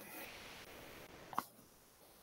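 Faint background hiss with one brief click about one and a half seconds in, after which the sound cuts out to silence.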